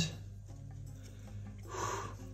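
Soft rubbing rustle of a linen liner and cane banneton being lifted off proofed sourdough dough, the dough releasing cleanly, loudest near the end, over a faint steady low hum.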